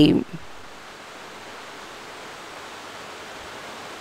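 A woman's drawn-out last word falls in pitch and trails off at the very start, followed by a steady, even hiss.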